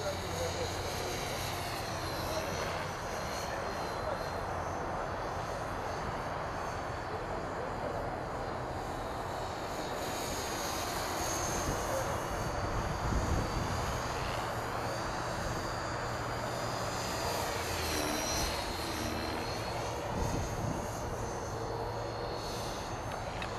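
450-size electric RC helicopter in flight: a high whine from its motor and rotor head that repeatedly rises and falls in pitch as it maneuvers, over steady background noise.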